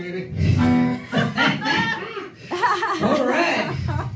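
A man's voice through a microphone, chuckling and vocalizing over the band's music.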